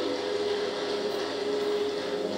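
A steady hum with one held tone.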